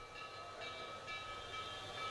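A faint, steady high-pitched tone, with a few fainter tones above it, held without change.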